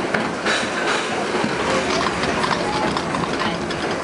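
Interior running noise of a Westinghouse R68 subway car moving through a tunnel: a steady loud rumble with an irregular clatter of wheels over rail joints.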